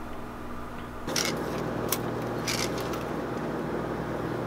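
A steady low hum with a few brief scrapes and rustles of handling, from about a second in, as a tape measure is set across wooden attic joists.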